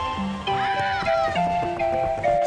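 Background music with a melody of short, steady notes. About half a second in, a high wavering cry rises and falls over it for about half a second.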